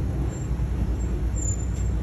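Open-air safari truck running with a steady low engine rumble, heard from a seat inside the vehicle.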